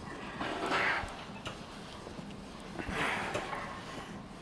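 A man breathing out hard twice, about two and a half seconds apart, with the effort of reps on a back-exercise machine. Low gym room noise in between.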